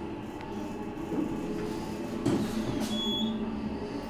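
Elevator car travelling down, with a steady rumble and hum of the car in motion and a couple of knocks. A short high beep sounds about three seconds in.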